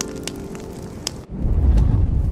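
Television scene-change music sting: held tones fading out, then a deep low boom about a second and a half in.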